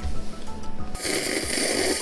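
A noisy rush of breath at the mouth over a forkful of hot noodles, lasting about a second and starting about halfway in. Quiet background music plays underneath.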